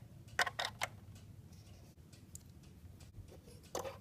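A few light clicks and taps of a plastic toy figure being handled and moved across a surface: several about half a second in and one more near the end, over faint room noise.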